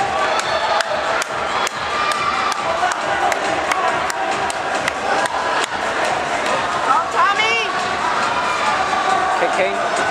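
Spectators in an indoor track arena cheering and shouting over a steady crowd din, with sharp clicks throughout. A burst of high, rising shouts comes about seven seconds in.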